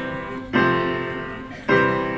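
Upright piano playing sustained chords: a new chord is struck about half a second in and another near the end, each ringing on and fading.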